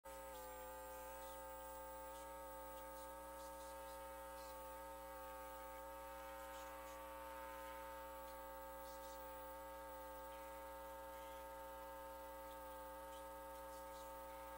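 Faint, steady electrical mains hum on the audio line, a buzz with many overtones, with a few faint ticks.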